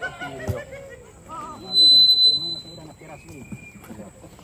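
A whistle blast, one steady shrill note just under a second long, about two seconds in, over distant shouting voices on a football pitch.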